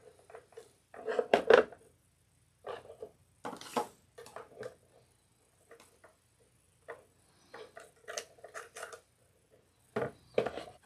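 Plastic cable connectors and cords being handled and screwed together by hand: irregular clicks, taps and rustles, loudest about a second in and again around three and a half seconds in.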